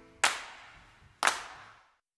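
Two sharp percussion hits at the tail of a music track, about a second apart and keeping the track's steady beat, each decaying quickly as the last chord has already faded out; the sound stops just before the end.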